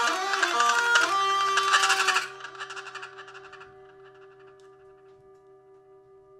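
Free-improvised ensemble of reeds, horns and percussion playing densely, then stopping abruptly about two seconds in. A single pitched tone is left ringing on, slowly dying away.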